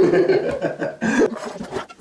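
People chuckling and laughing, with some talk mixed in.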